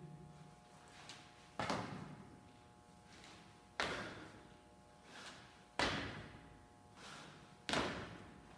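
Feet landing on rubber gym flooring during repeated switch split squat jumps: four thuds about two seconds apart, each with a fainter sound about half a second before it.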